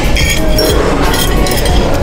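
Metal spoon and fork clinking and scraping against a ceramic plate a few times, over background music.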